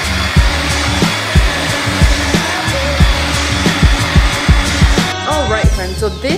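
A hair dryer with a diffuser attachment blowing steadily under background music with a steady beat; the dryer stops about five seconds in.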